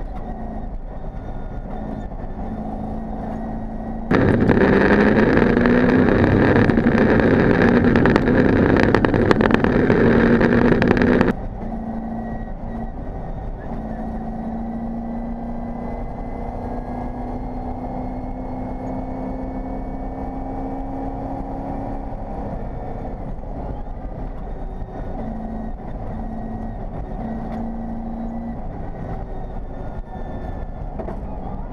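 Opel Mokka rally raid car's engine heard from inside the cabin while driving at speed on a dirt track, a steady note that rises slowly and then drops. About four seconds in, a much louder rough noise covers it for about seven seconds, starting and stopping abruptly.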